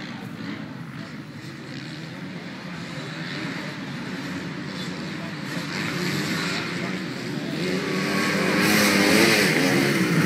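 Motocross bikes racing round a dirt track, their engines revving up and down with throttle and gear changes. The sound is distant at first and grows louder, loudest near the end as two bikes pass close by.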